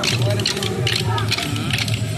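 Kolatam dance sticks clacking together in a quick, uneven rhythm as dancers strike them, over dance music with a steady, repeating bass beat and voices.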